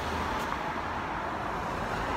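Steady road traffic noise: a vehicle's engine and tyres on the road.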